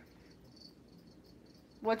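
A cricket chirping faintly in a steady run of short, high chirps, about four a second.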